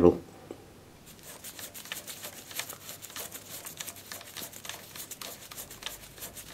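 Faint, irregular small clicks and rubbing as fingers spin an adjuster nut onto the threaded end of a scooter's rear brake cable.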